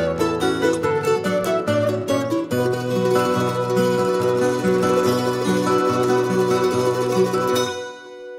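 Andean huayno played by an acoustic ensemble: a charango picks a quick melody over plucked guitar and bass notes, with a wooden flute holding long notes. The music stops suddenly just before the end.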